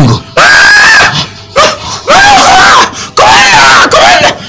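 Loud, high-pitched human screaming: four cries of about a second each, with short breaks between them.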